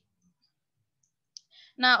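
Near silence, broken about one and a half seconds in by a single short click, followed by a woman starting to speak near the end.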